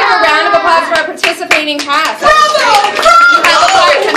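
A few sharp hand claps, bunched in the first half, among several people's voices.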